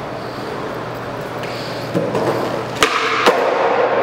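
Skateboard wheels rolling on a smooth concrete floor, growing louder about halfway through, then two sharp clacks of the board about half a second apart during a trick attempt that does not quite land.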